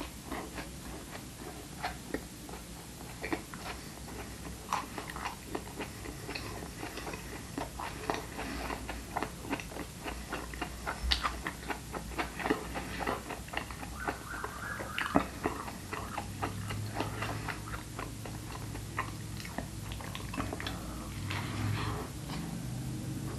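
A person chewing and biting into a moist vegan mushroom burger, making irregular wet mouth clicks and smacks throughout.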